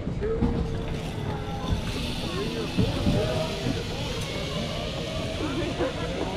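Voices of people talking, no words clear, over a low rumble of wind on the microphone, with a steady high hiss setting in about two seconds in.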